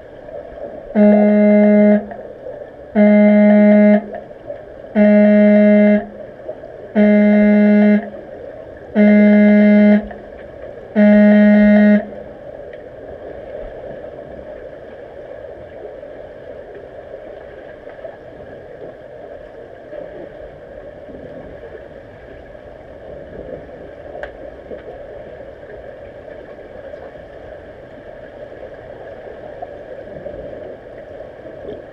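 Underwater signal horn sounding six times, each tone about a second long and two seconds apart: the referee's signal that stops play in underwater rugby. After it, only the steady hiss and gurgle of pool water as heard underwater.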